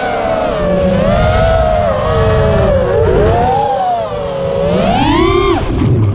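Race Day Quads 2205 2450kv brushless motors on a small FPV quadcopter whining with their propellers, several close pitches wandering up and down with the throttle over wind rush on the onboard microphone. Near the end the whine climbs steeply on a burst of throttle, then drops away suddenly as the throttle is cut.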